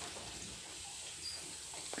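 Quiet background: a faint, steady hiss with no distinct sound in it.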